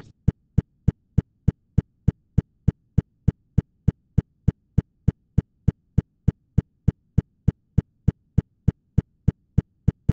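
A steady train of short, low thumps, about three a second, evenly spaced, with near silence between them.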